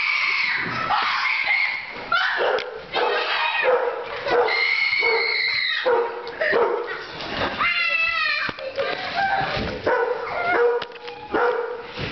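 Dogs barking and yipping in play, with high whining cries that rise and fall in quick runs about two-thirds of the way through and again at the end. Bumps and knocks from the camera being jostled run among them.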